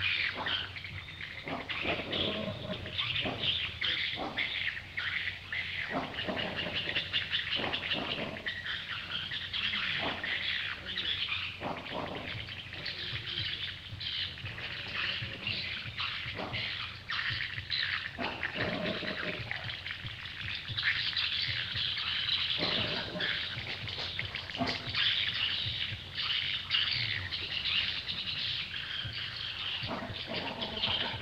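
Birds chirping and twittering steadily, with scattered short rustles and soft knocks of a small animal moving on a towel.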